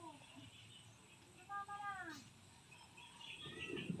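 Faint distant call, one short cry that falls in pitch about a second and a half in, over a quiet outdoor background; near the end a low rumble of thunder slowly builds.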